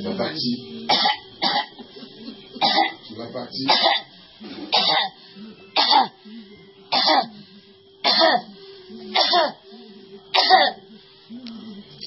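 A person coughing over and over, one harsh cough about every second, some trailing into a voiced sound.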